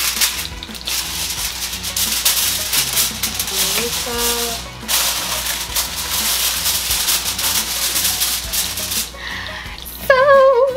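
Aluminium foil crinkling and crackling as a sheet is pulled from its box and pressed down over a baking pan. The crinkling comes on and off and stops about a second before the end. Soft background music plays underneath.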